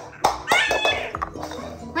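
A short high-pitched cry about half a second in, over background music.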